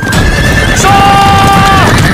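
A cavalry charge: many horses galloping over a low rumble of hooves, with loud horse neighs held long and steady over the top, in two calls that end a little before the two-second mark.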